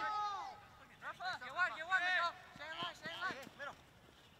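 Several people shouting across a soccer field, the calls too distant to make out as words, in short bursts with brief gaps.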